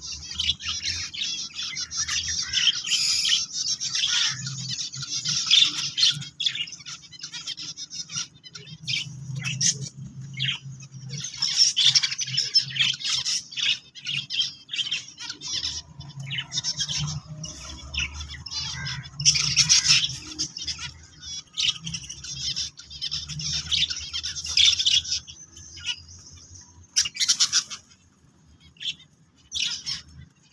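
Zebra finches and their nestlings chirping in a nest box: a dense, rapid chatter of high-pitched calls, with a low rumble underneath and a brief lull near the end.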